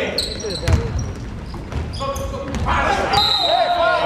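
Indoor basketball game in a reverberant gym: players' and spectators' voices call out over dull thumps of the ball and high squeaks on the court. Near the end a steady high whistle blast sounds, the referee blowing for a call.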